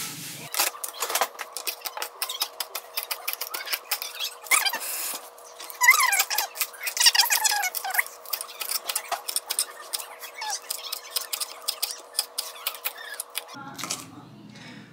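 Small kitchen knife chopping green onions on a cutting board: quick clicking strokes, several a second, with a few squeaks around the middle. A faint steady hum runs underneath.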